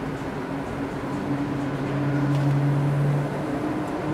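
A steady low machine hum that swells about a second in and eases off near the end.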